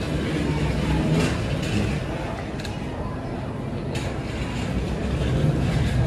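Supermarket background noise: a steady low rumble with a general hubbub and a few faint clicks, as from shopping carts rolling nearby.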